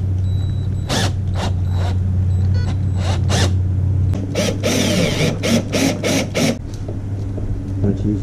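Scattered clicks and scrapes of a hand tool and cable clip being worked against the boat's rub-rail trim as a transducer cable is fastened down, with a busier run of clicks and scraping about halfway through, over a steady low hum.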